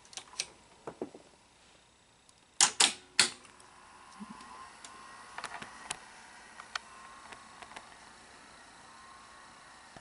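Sharp clicks and knocks from handling an opened Sony SL-5000 Betamax VCR, a few light ones at the start and the loudest group a little under three seconds in. After about four seconds a faint high whine with occasional light ticks.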